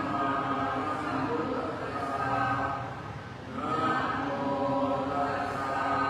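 Buddhist chanting: a group of voices chanting together in unison on long, held tones, with a brief pause for breath about three seconds in.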